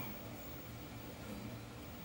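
Faint, steady background hum with a low drone and no distinct sound event.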